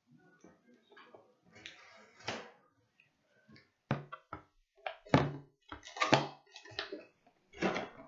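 A cardboard console box being handled: faint rustles at first, then from about four seconds in a run of sharp knocks and scrapes as it is tugged at and lifted.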